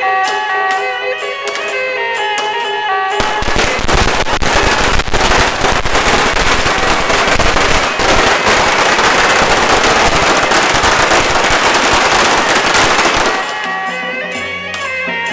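Music for about three seconds, then a long string of firecrackers going off in a dense, continuous crackle for about ten seconds, stopping shortly before the end.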